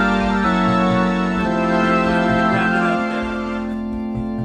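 Hammond Colonnade theater organ playing sustained chords, changing chord about half a second in, around a second and a half, and again near three seconds, with soft regular low pulses underneath.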